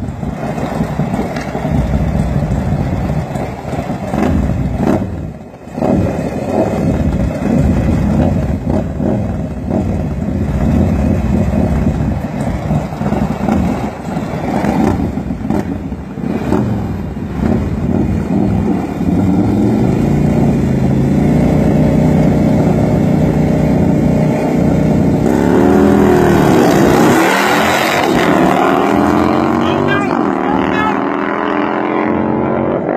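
Two Harley-Davidson V-twin bagger motorcycles running side by side, revved in uneven blips, then held at a steady high rev from about two-thirds of the way in. Near the end they pull away hard, louder, with the engine pitch swinging up and down.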